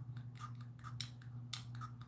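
A quick run of light, sharp clicks, about five or six a second, over a low steady hum.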